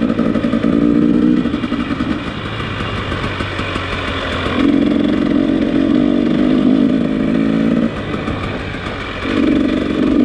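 Dirt bike engine running on the move, picked up by a helmet-mounted microphone. The throttle eases off twice, from about 1.5 to 4.5 seconds and again around 8 to 9 seconds, with the engine note dropping back each time before it pulls strongly again.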